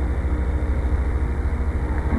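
A steady low rumble with a fast, even flutter in its loudness, and no speech over it.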